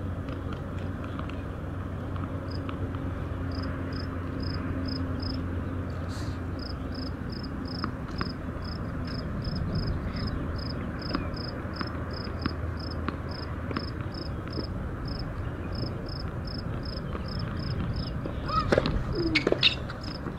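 An insect chirping at an even pace, about two short high chirps a second, over a steady outdoor background with a low hum. Near the end a few louder sharp sounds and short sliding calls break in.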